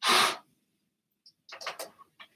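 A short, loud burst of breath noise with no note, then a few brief breathy puffs about a second and a half in.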